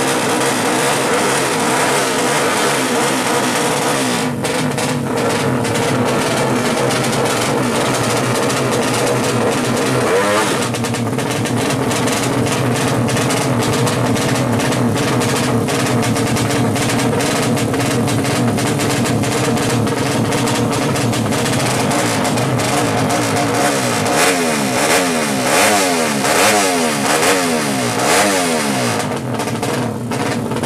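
A 200cc drag-race motorcycle engine running loud at the start line while the rider works the throttle, its pitch swinging up and down. In the last several seconds it is blipped in quick repeated revs.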